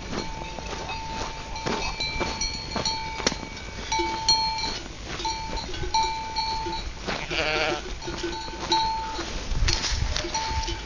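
Flock of sheep with bells ringing on and off throughout, among scattered clicks and knocks, and one sheep bleating once, about seven seconds in.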